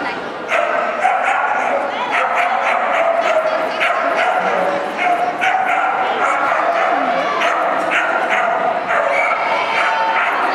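Dogs barking and yipping over and over, short sharp barks coming every second or so, with voices murmuring underneath, all echoing in a large hall.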